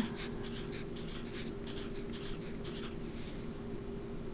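Sharpie felt-tip marker scratching on paper while short digits are written, a quick series of about ten short strokes over the first three seconds, over a steady low hum.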